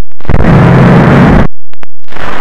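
Heavily distorted, clipped audio of a parody logo soundtrack run through a 'G-Major 4' pitch-shift and overdrive edit, slowed down: a blast of loud crackling noise over a low drone, which drops out briefly just after the start and again about one and a half seconds in.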